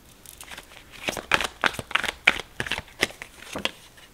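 Tarot deck being shuffled and handled: a quick, irregular run of crisp card snaps and slaps, busiest in the middle.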